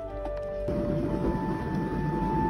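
Background music with light sustained notes; under a second in, a dense bubbling sound of tea boiling in an electric glass health kettle starts suddenly and runs on under the music.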